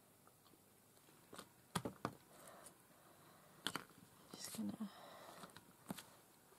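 Rubber stamp and ink pad being handled on a craft table: a few faint, sharp taps and clicks about two seconds in and again near four seconds, with a brief low hum of voice shortly before the end.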